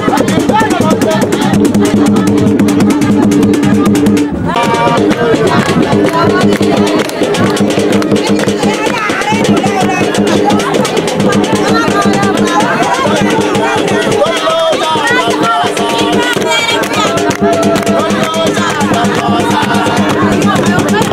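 Somali Bantu group music played live: drums and shaken rattles keep a fast, dense rhythm under steady low held notes, with voices singing over it. The music drops out briefly about four seconds in, then comes back in with the singing.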